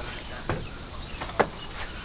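Footsteps on wooden stairs: two clear knocks of shoes on the wooden treads, about a second apart, over faint outdoor background.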